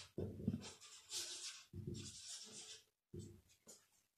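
Marker pen writing a word on a white board: a series of faint, short, irregular strokes.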